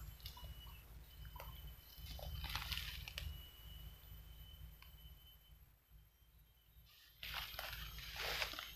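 Faint rustling and crunching of leaf litter and undergrowth as a person moves about on the forest floor, in a short bout about two and a half seconds in and again near the end.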